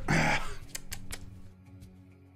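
A short raspy laugh or exhaled vocal burst at the start, followed by a few sharp clicks, over quiet, steady background music.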